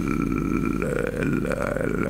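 A man's drawn-out, creaky vocal hesitation, a long gravelly 'eeeh' held through the two seconds while he searches for his next word. A faint steady high tone runs underneath.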